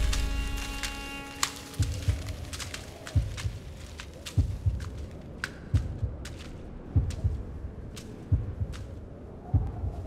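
Film sound design: a music chord fades out in the first second and a half, then a slow pulse of deep thuds, some doubled, comes about every 1.3 s, with scattered sharp clicks between them.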